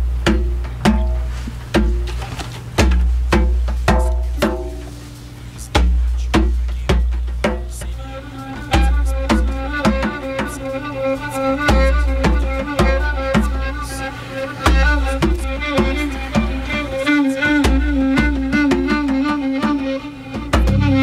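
Live acoustic band playing an instrumental reggae intro: rhythmic guitar and a djembe hand drum. A bowed violin joins about eight seconds in, playing long held notes over the groove.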